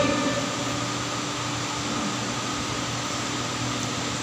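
Electric fan running steadily, an even whirring noise with a faint low hum beneath it.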